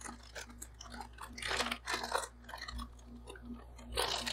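Foil snack bag of Sun Chips crinkling as gloved hands squeeze it, crushing the chips inside with irregular crunches, loudest about one and a half to two seconds in. A steady low hum runs underneath.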